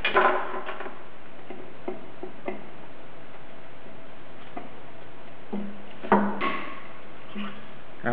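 Small metal tool sounds as a stuck snap ring is worked off a steel pulley shaft with snap-ring pliers and a screwdriver: a few faint ticks, then one sharp metallic click about six seconds in as the ring comes free.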